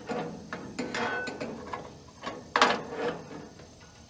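Sheet-metal grease tray of a small vertical cabinet smoker being handled and slid in its runners: a run of metallic rattles and clicks, with a louder clank about two and a half seconds in.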